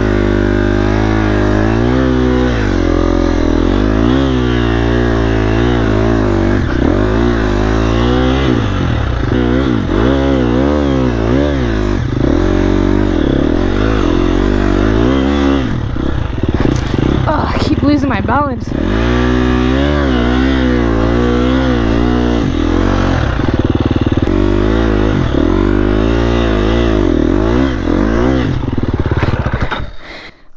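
Dirt bike engine working hard up a steep, rutted hill climb, its revs rising and falling over and over. The engine stops near the end as the bike goes down.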